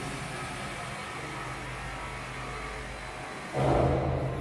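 Steady street noise with a low engine hum, likely from passing traffic outside. It swells louder for about half a second near the end.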